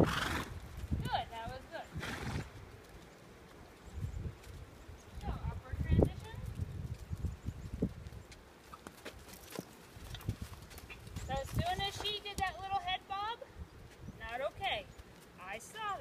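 A horse's hooves thudding irregularly as it walks on a dirt-and-gravel arena. About twelve seconds in comes a quavering horse whinny.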